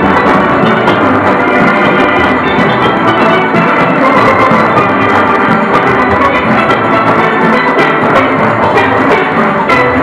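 A full steel orchestra playing live: many steelpans ringing together over a steady drum and percussion rhythm, loud and continuous.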